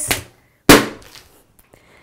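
A rubber balloon squeezed by hand until it bursts: one sharp bang about two-thirds of a second in, dying away within about half a second.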